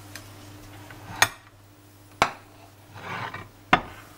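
Ceramic plates clinking as they are handled: three sharp clinks, about a second in, a second later, and near the end, with a brief rustle just before the last one.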